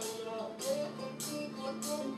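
Playback of a home-recorded rock song's sparse intro through small desktop speakers: a drum kit with a few sharp hits, under held bass and talk box guitar notes, the other tracks still faded down in the mix.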